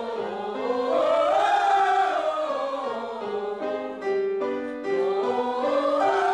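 Group of voices singing a vocal warm-up exercise over piano chords, the vowel sound sliding up and down. The voices drop out briefly about four seconds in while the piano plays on.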